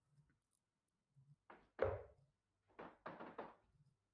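A few faint knocks and thumps in a small room, the loudest about two seconds in, with a short cluster near the end.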